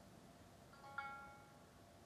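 A single shamisen note struck about a second in: a sharp attack that rings and dies away within about half a second.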